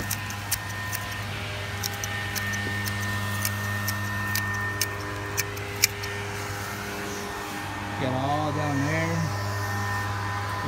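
Hand pruners snipping creeping fig: a series of sharp clicks through the first six seconds, over a steady low machine hum. About eight seconds in, a brief wavering voice-like sound.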